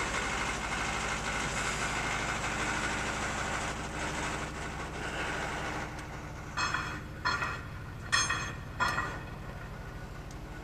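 A steady low hum of an idling engine, with four footsteps on the quay at walking pace in the second half.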